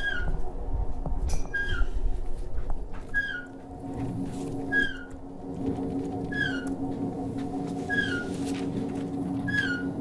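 Motorized projection screen unrolling: a steady motor hum with a short, falling squeak that repeats evenly about every one and a half seconds.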